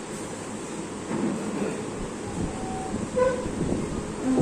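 Short vehicle horn toots over steady background noise: a brief single tone a little under halfway through and a short, fuller honk about three quarters of the way in.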